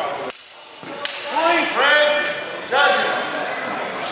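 A sharp crack of longsword blades striking, then loud shouting from several men for about two seconds as the exchange is called to a halt.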